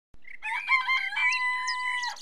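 A rooster crowing: a few short stepped notes, then one long held final note, with small birds chirping faintly over it.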